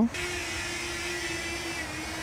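DJI Flip mini drone's motors starting and its propellers spinning up on auto takeoff, a steady whine with a thin high overtone, as it lifts off to hover.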